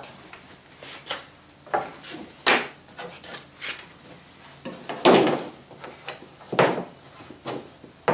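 Wooden blocks knocking and sliding against plywood as they are handled and stacked, in a series of irregular knocks and scrapes, the loudest about five seconds in.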